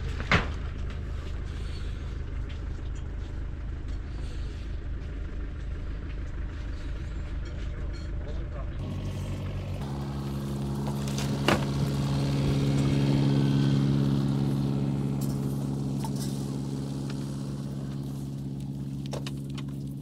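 A motor's steady low drone starts about halfway through, grows louder and then eases off, over a low rumble. There is a sharp knock near the start and another in the middle.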